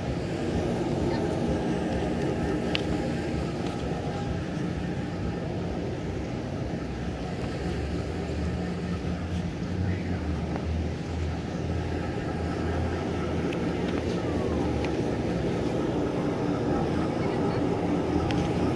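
Steady low outdoor rumble, with a deeper drone swelling in the middle and fading again.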